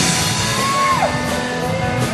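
Rock band music with guitar; a high held note slides down about a second in.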